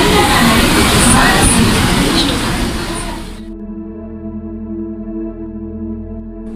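Loud, busy crowd noise with voices around a suburban train door. It cuts off sharply about three and a half seconds in, giving way to a sustained ambient synth chord held steady.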